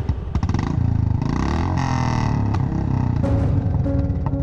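Motorcycle engine running as the bike rides up, with background music coming in near the end.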